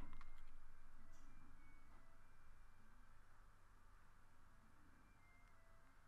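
Near silence: faint room tone with a low hum, dying away over the first three seconds.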